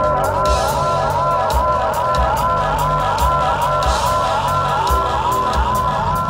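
Live ska band playing an instrumental passage: a steady drum beat, bass guitar, and a riff of rising-and-falling notes that repeats about twice a second, with crowd noise under it in a large hall.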